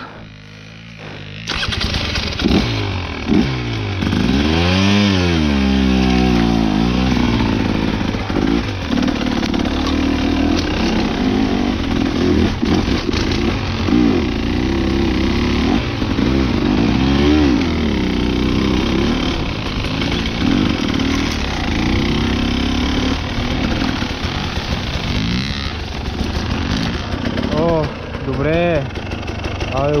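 Dirt bike engine on a KTM enduro motorcycle, revving up and down repeatedly while riding. The engine sound comes in suddenly and loud about a second and a half in.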